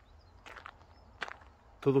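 Footsteps on a dirt-and-gravel track: a few short steps, about half a second and a second and a quarter in, over faint outdoor background noise.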